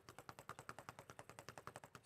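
Leather speed bag rattling against its round wooden rebound platform under continuous fist punches: a faint, even, fast run of knocks, about nine to ten a second.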